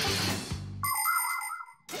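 Cartoon sound effect: a brief rushing swish over the background music, then a bright, steady ringing ding lasting about a second that cuts off suddenly near the end.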